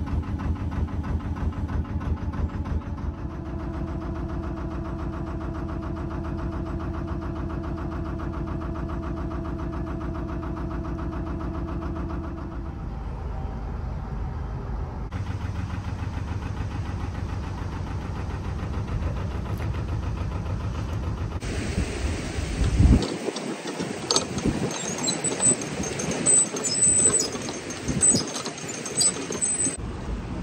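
A narrowboat's engine running steadily as the boat cruises. Later it gives way to water rushing through a canal lock, with wind buffeting the microphone.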